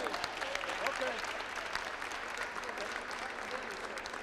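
A group of people applauding steadily, with voices talking over the clapping.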